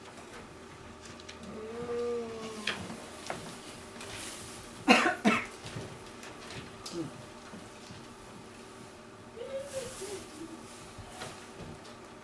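A person coughing once, loudly, about five seconds in. Short voiced hums come before the cough and again near the end.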